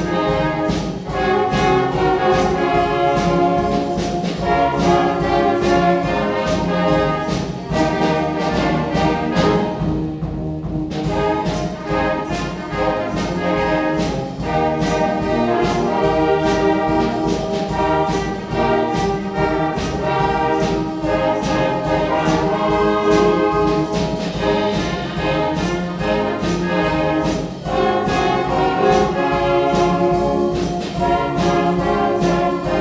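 A youth wind band of brass and saxophones plays live over a steady percussion beat of about two strokes a second. The beat and the high end drop out briefly about ten seconds in, then return.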